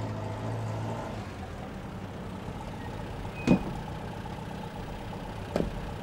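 A stopped military truck's engine idling steadily, with one sharp click about three and a half seconds in and a lighter knock near the end.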